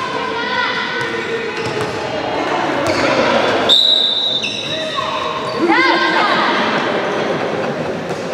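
Youth handball game sounds: players and coaches shouting across the court and the ball bouncing on the wooden floor, with one referee's whistle blast lasting about a second a little before the middle.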